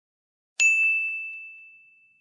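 A single bright ding, a bell-like sound effect struck once about half a second in, ringing on one high tone and fading away over about a second and a half.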